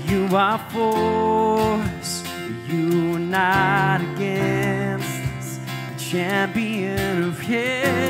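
A man singing a worship song, accompanying himself on a strummed acoustic guitar, with several held notes sung with vibrato.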